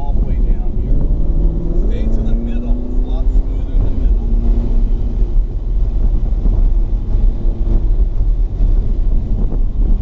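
Ferrari 488's twin-turbo V8 heard from inside the cabin under hard acceleration, its note climbing in pitch over the first few seconds, then holding steadier with road and wind noise underneath.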